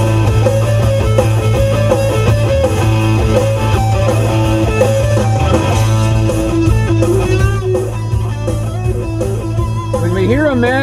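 Rock track with a prominent electric guitar melody over a steady bass line, playing from a CD on a car stereo.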